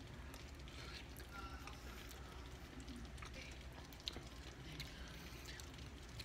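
Faint chewing of a mouthful of hot food over a low steady room hum, with one small sharp click about four seconds in.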